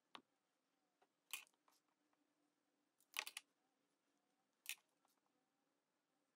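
Sharp clicks from handling hair-styling tools, a comb and a flat iron, over a near-silent background. There is about one click every second or so, and a quick flurry about three seconds in is the loudest.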